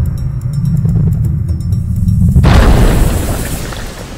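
Deep, loud rumbling sound effect, then a sudden rushing splash about two and a half seconds in that fades away.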